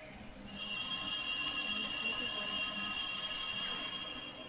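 A high-pitched ringing of several tones at once, like bells, starting suddenly about half a second in and held steady for about three and a half seconds before it starts to fade.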